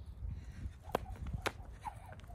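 Jump rope slapping the ground as it passes under the feet, twice about half a second apart, starting about a second in.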